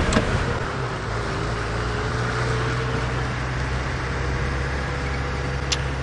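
Open game-drive vehicle driving along a dirt road: a steady engine drone with tyre and wind noise.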